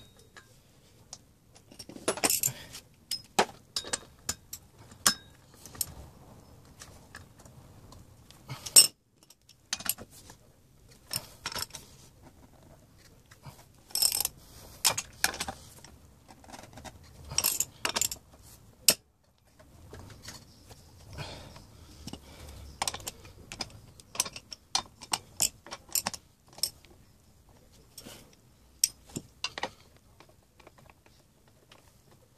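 Scattered metallic clicks and clinks of a socket wrench on the steel nuts of a motorcycle's rear sprocket as they are undone, coming in short clusters with pauses between.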